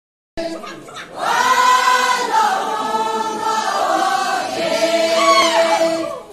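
A large crowd singing together in chorus, many voices holding long notes that move slowly in pitch. The singing starts abruptly just after the opening silence.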